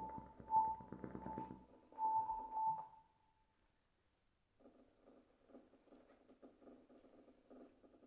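Bassoon with live electronics: short, high notes and a denser low burst about a second in, cutting off after about three seconds into a second and a half of silence. A faint, crackly texture follows near the end.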